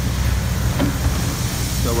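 Car engine idling with the air-conditioning compressor engaged: a steady low rumble with an even hiss of airflow from the engine bay.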